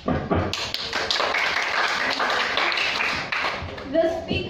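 Audience applauding, a dense run of hand claps that starts right away and dies down just before the end.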